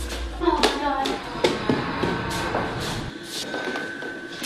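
A series of sharp knocks and bangs over a low rumble, with a steady high tone coming in about halfway through.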